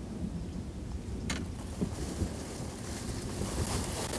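Storm wind buffeting the microphone with a steady low rumble, light rain hissing faintly and growing near the end, and one sharp tap about a second in.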